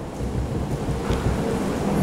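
A steady rushing noise with a low rumble underneath, growing slightly louder through the pause.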